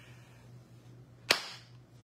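A single sharp hand clap about a second and a quarter in, with a short ring after it, over a faint steady low hum.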